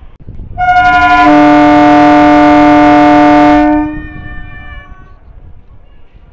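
Air horn of an arriving Indian suburban EMU local train, sounded in one long blast of about three seconds. It starts on a higher note, a lower note joins about a second later, and it cuts off with a brief echo dying away, over the low rumble of the train.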